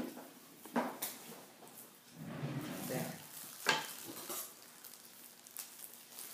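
Crinkling of thin plastic gloves and a knife handled against a cloth-covered table while cutting at a sardine, with a few sharp knocks, one near the start, one just before a second in and one at nearly four seconds.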